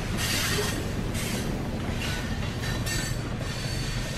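A train passing close by: a steady low rumble of wheels on rails, with several irregular high, hissing screeches from the wheels.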